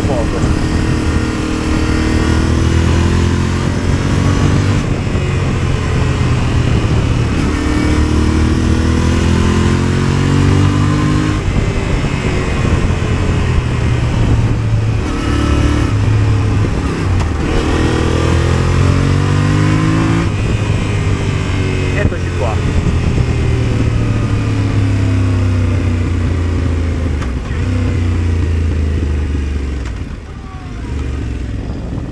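Yamaha motorcycle's engine heard from the rider's seat while riding on the open road, its pitch rising and falling repeatedly with the throttle and gears, over steady wind rush on the microphone. Near the end the engine note drops as the bike slows down.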